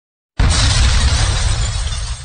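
Logo-reveal sound effect: a sudden loud burst of noise with a deep rumble underneath, starting about a third of a second in and holding steady.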